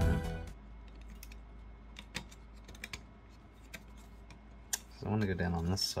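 Background music fades out, then faint scattered clicks and taps as a perforated circuit board is handled and pressed onto an Arduino board's pin headers.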